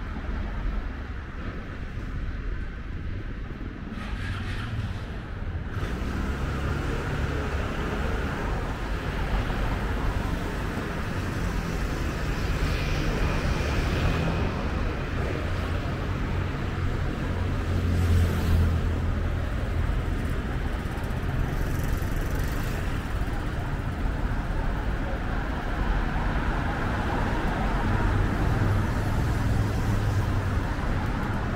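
City street ambience: road traffic passing, with a steady low rumble that swells as a vehicle goes by about two-thirds of the way through, and faint voices of passers-by.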